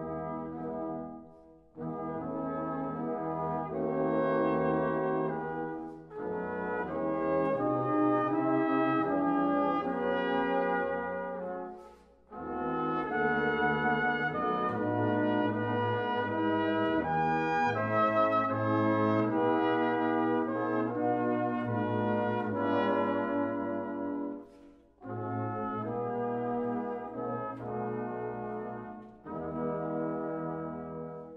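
A 19th-century American wind band on period brass instruments, with clarinets in the mix, playing a slow serenade in sustained chorale-style chords. The phrases are separated by short pauses.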